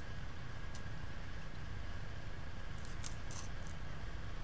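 Steady low hum with a few faint, short scrapes and clicks about three seconds in: a glass Erlenmeyer flask being swirled against a sheet of paper on the lab bench.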